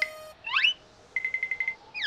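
Cartoon sound effects: a tone fading out at the start, two quick rising whistle-like glides, then a rapid run of short, high beeps lasting about half a second.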